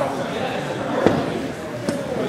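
Background talk of people in a large, echoing gym hall, with a sharp thump about a second in and a smaller knock near the end.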